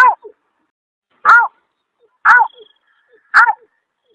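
Short 'aw' calls of the bird known in Indonesia as berkik or beker, a snipe, about one a second, each rising and then falling in pitch. They come from an edited playback recording used to lure the birds.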